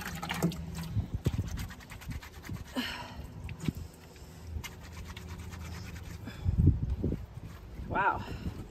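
A wet cloth rag being scrubbed and wrung out by hand over a laundry sink, with many small wet clicks and drips. A low thump comes late on.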